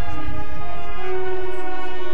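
Marching band brass playing loud, sustained chords, the notes shifting a couple of times, over a heavy low end.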